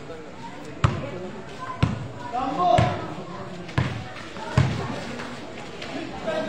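A basketball being dribbled on a hard court, five slow bounces about a second apart, with players' voices and a shout in the background.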